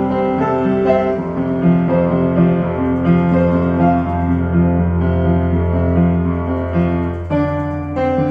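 Upright acoustic piano playing chords under a melody line. A low bass note is held through the middle few seconds, and the playing shifts to a new chord pattern near the end.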